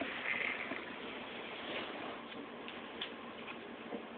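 Quiet room tone: a low steady hiss with a few faint light clicks and ticks scattered through it.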